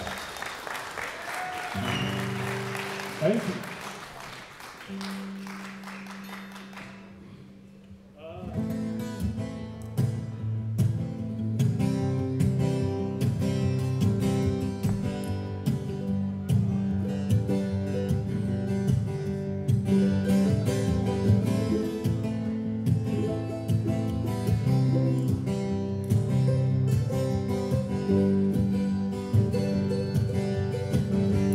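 Audience applause fading out over a few ringing guitar notes, then a brief lull. About eight seconds in, an acoustic guitar and a mandolin start a strummed, rhythmic instrumental together.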